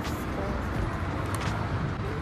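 City street traffic noise, a steady rumble with a couple of short clicks, under faint background music.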